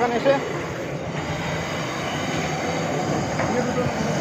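Gas-fired rotating-drum puffed-rice (muri) roasting machine running with a steady mechanical hum and rush.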